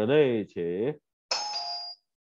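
A short electronic two-note chime, ding-dong, stepping down in pitch, about a second and a half in.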